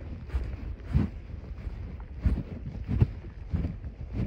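Wind buffeting the microphone on horseback, with a regular soft thump about every two-thirds of a second in time with the horse's walking stride.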